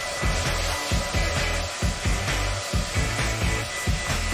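Hand-held hair dryer blowing steadily into a plastic soda bottle, with background music carrying a steady bass beat.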